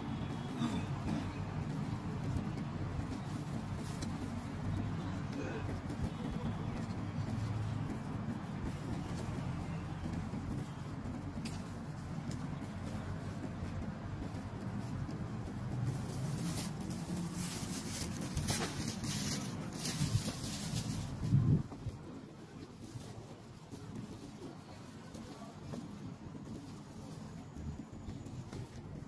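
Outdoor city ambience: a steady low rumble of distant traffic with faint voices of passers-by. Near the middle there is a few seconds of louder hiss that ends in a short thump, after which the rumble falls away and it turns quieter.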